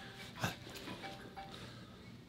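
A mobile phone starting to ring, its ringtone notes still faint, with a man's voice breaking off in a brief 'I...' about half a second in.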